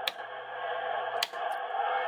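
Steady hiss of CB radio receiver static, with two sharp switch clicks about a second apart as the linear amplifier is switched off.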